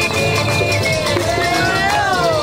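Live folk music from a parading dance troupe, with accordion and tambourines, and a voice sliding up in pitch through the second half.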